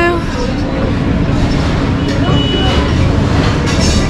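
Steady rumbling background din of a busy restaurant, with faint chatter of other diners.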